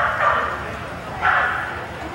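A dog barking twice, about a second apart, while running an agility course.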